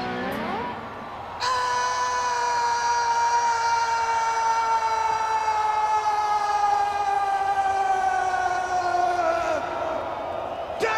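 A rock singer's long held high note, sustained for about eight seconds and sliding slowly down in pitch. It ends near the close, with little else of the band audible underneath.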